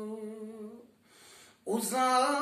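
A man's unaccompanied voice singing a Turkish ilahi, with no instruments. He holds a long note that fades out, pauses for about a second, then starts the next line loudly near the end.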